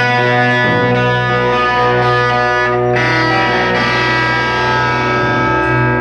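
Live rock band with distorted electric guitars ringing out held chords over a steady low note, changing chord about halfway through.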